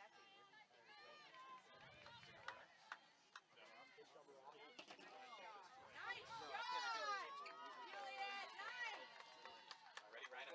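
Voices calling and shouting across a soccer field during play, loudest from about six to nine seconds in, with a few sharp knocks.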